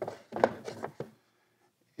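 Metal-topped wooden beehive outer cover being set down and seated on the top wooden hive box: a quick run of knocks and wood-on-wood rubbing over about the first second, the loudest knock about half a second in.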